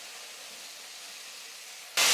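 Faint, steady sizzle of the upma seasoning (onion, peanuts and curry leaves) frying in oil in a stainless-steel kadai: an even hiss with no scraping or clicks.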